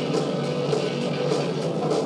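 Rock band playing: electric guitar and drum kit at a steady, even level.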